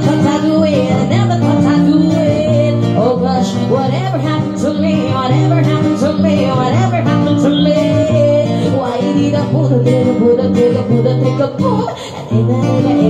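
Acoustic guitar strummed in a steady rhythm, with a woman singing the melody over it.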